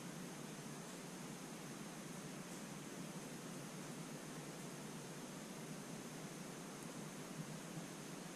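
Steady hiss of room tone with no distinct sounds, recorded on a GoPro's built-in microphone.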